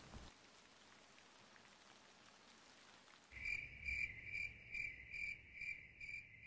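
Near silence for about three seconds, then a faint, high chirping like crickets or other insects begins, pulsing about two and a half times a second over a low rumble.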